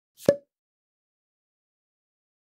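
A single short pop sound effect with a brief pitched ring, about a quarter second in, accompanying an animated on-screen title.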